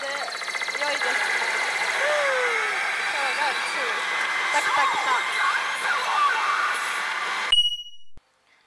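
Pachinko parlour din: a loud, dense wash of machine noise with voices from the GANTZ pachinko machine's effects over it. It cuts off suddenly near the end, with a brief high beep.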